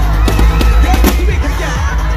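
Fireworks cracking and popping in quick succession over loud music with heavy bass.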